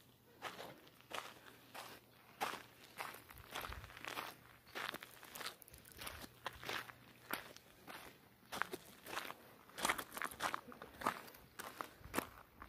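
Footsteps on loose gravel at a steady walking pace, about two steps a second.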